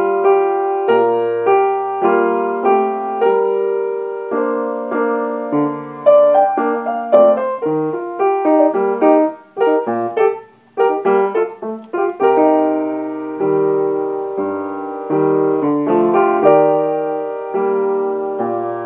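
Piano played by hand: chords and melody notes, each struck and then dying away, with two short breaks in the playing about ten seconds in.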